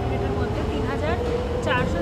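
A woman talking over a steady low rumble and a single whine that slowly rises in pitch, typical of an electric train's motors as it pulls away from the platform.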